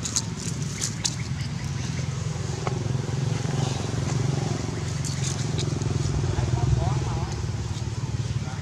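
Steady low drone of a motorbike engine running nearby, with a few sharp rustles and clicks in the first second.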